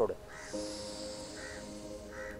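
A slow, steady exhale through one nostril in alternate-nostril pranayama breathing, the right nostril held shut and the breath released through the left, heard as a soft hiss starting about half a second in. Three short bird calls sound behind it.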